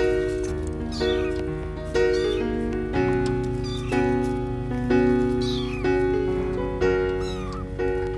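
Five short, high, falling cat meows about every second and a half, over louder background music of sustained notes that change about once a second.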